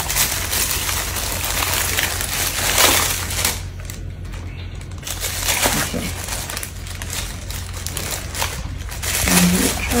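Packaging crinkling and rustling as a gift is unwrapped by hand, in an uneven run of crackles.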